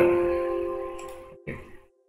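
Windows 10 warning chime: a single ringing tone that fades out over about a second and a half. It sounds as an error dialog ('PL should be less than Alarm High') rejects the alarm-limit value just entered.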